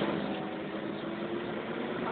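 Iveco Eurorider city bus with a Voith automatic gearbox, heard from inside the cabin as it moves: a steady engine and transmission hum with a held tone.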